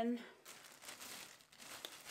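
A plastic shopping bag crinkling and rustling as it is handled and opened, in irregular crackly rustles.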